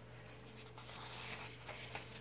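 Paper rustling and sliding as a softcover coloring book is handled and turned over, with a few light taps of the cover near the end.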